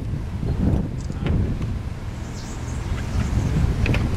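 Wind buffeting the microphone: an uneven low rumble, with a few faint clicks.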